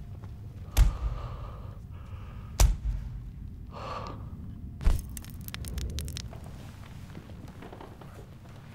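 Three heavy, deep thuds in a film soundtrack, about two seconds apart, each ringing out with a booming echo. A short breathy hiss comes between the second and third, and a quick flurry of small clicks follows the third.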